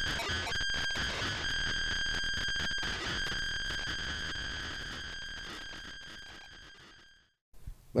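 A sustained high synthesized tone over dense, glitchy crackling clicks, fading slowly and cutting off suddenly near the end.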